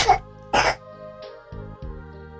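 Quiet background music of sustained chords, with a short, breathy vocal exhale or hiss about half a second in.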